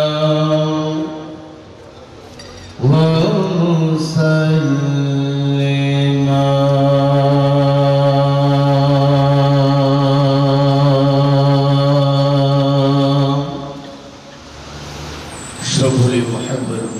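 A man's voice chanting melodically through a microphone and sound system, in long held notes. One note ends about a second in, the voice rises into a new phrase near three seconds, then holds one long note for about nine seconds before it fades.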